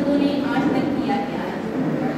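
Speech only: a woman talking into a hand-held microphone, with a steady noisy room background.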